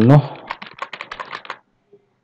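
Computer keyboard typing: a quick run of keystrokes lasting about a second and a half as a short string of letters is typed.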